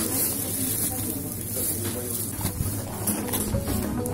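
Rustling of a plastic grocery bag and a yellow courier delivery bag as the order is packed, over background music.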